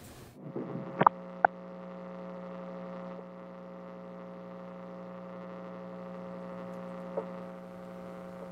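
Two sharp clicks about a second in, then a steady electrical hum on an open remote call-in line as the caller's audio connects.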